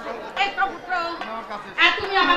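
Actors' voices speaking on stage, with a loud shout near the end.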